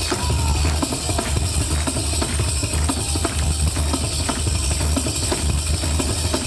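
Live amplified pizzica music: a tamburello frame drum beats a fast, steady rhythm over a deep bass pulse from the band.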